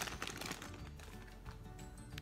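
Thin plastic packaging bag crinkling with small clicks as it is pulled open by hand, over quiet background music.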